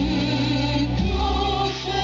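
Live band music with singing, amplified through a stage PA and heard from among the seated audience of an open-air concert.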